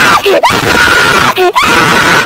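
A cartoon character screaming loudly: long, high held screams, one after another, with short breaks between them.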